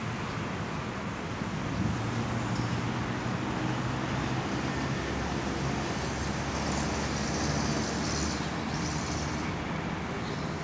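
Steady road traffic noise from nearby city streets, a low hum of passing vehicles that swells a little from about two seconds in.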